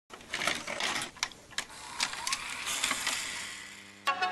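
VHS-style static sound effect: a hiss with sharp crackles and clicks, and a short rising whine a little after two seconds in.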